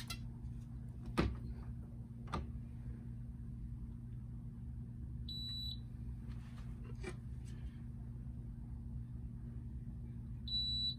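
Electronic racket swing-weight machine giving one short, high beep about halfway through while the racket is measured, with a few sharp knocks and clicks from the racket being clamped and set swinging. A low steady hum runs underneath.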